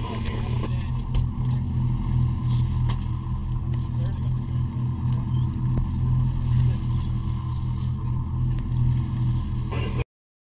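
A sportfishing boat's engines running steadily, a low, even drone.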